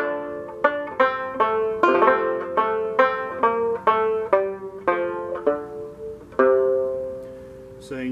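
Fretless Fairbanks Special #4 banjo picked in a steady run of single plucked notes, about two to three a second. It ends on one held note that rings out and fades away over the last second and a half.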